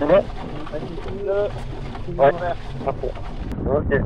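Wind and water rushing past the SP80 kite-powered speed boat running at high speed on the water, with short snatches of a person's voice over the noise.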